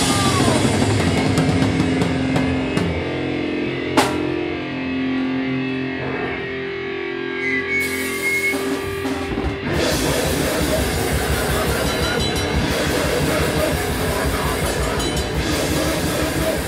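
A loud live heavy rock band: distorted electric guitar and a drum kit. About four seconds in the band thins out to a few seconds of held, ringing guitar notes, with a single sharp click at the start of that stretch, and near ten seconds the full band crashes back in.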